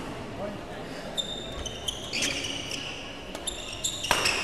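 Court shoes squeaking in short chirps on a badminton court floor as players move, with a few sharp racket hits on the shuttlecock, the loudest near the end.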